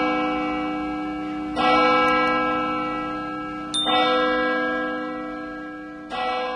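A church bell tolling, a new stroke about every two seconds, each one ringing out and slowly fading; a short high click comes with the stroke about two thirds of the way through.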